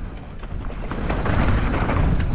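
Wind rushing over an action camera's microphone and knobbly tyres rolling over dry, stony dirt as a downhill mountain bike descends, with small clicks and rattles from the bike and loose stones. The rushing grows louder from about a second in.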